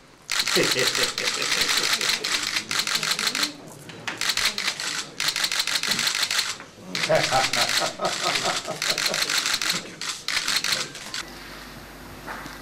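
Many camera shutters firing in rapid, overlapping bursts, broken by a few short pauses, with low voices underneath.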